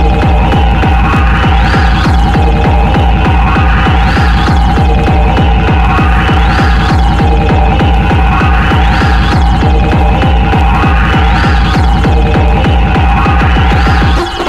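Hard, dark drum and bass (darkstep) track playing loud: a fast, steady kick-and-bass pulse under a held high tone, with a rising sweep repeating about every second and a bit. The whole thing cuts off abruptly at the very end.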